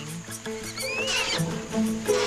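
Background music with sustained notes, under a young orangutan's high, wavering squeal about a second in.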